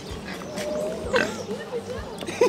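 Kunekune pig grunting as it takes food from a hand, with people's voices in the background.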